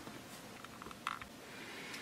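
Quiet room tone with a few faint short clicks about a second in.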